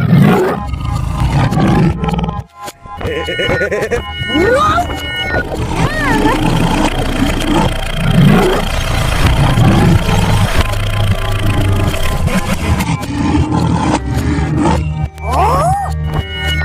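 Background music mixed with cartoon lion and tiger roar sound effects, with a few quick sliding pitch glides.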